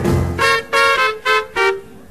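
Live hard-bop jazz quintet: trumpet and tenor saxophone play a run of five or six short, clipped notes together, the last ones trailing off near the end.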